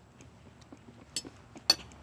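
A few light clicks and clinks of kitchenware being handled, with one sharp click about three-quarters of the way through over a faint background.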